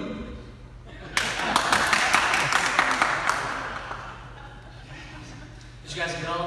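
Audience applause, starting suddenly about a second in and dying away over about three seconds.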